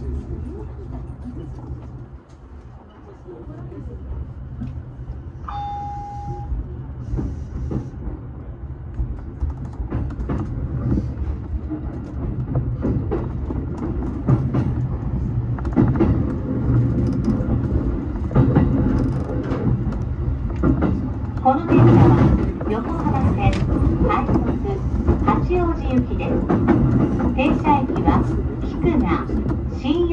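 JR Yokohama Line E233-series electric train pulling away and gathering speed, heard from the driver's cab: a low running rumble that grows louder, with clicks as the wheels pass over rail joints and points. A short single-tone beep sounds about six seconds in.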